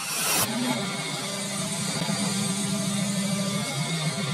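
Heavy rock music with a sustained, droning distorted guitar. Glass shatters with a short crash in the first half-second as it is struck.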